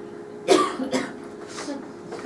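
A person coughing: one sharp cough about half a second in, then a few shorter coughs.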